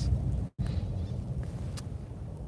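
Steady low rumble of a car's engine and tyres on the road, heard from inside the cabin while driving, with a brief total dropout of the audio about half a second in.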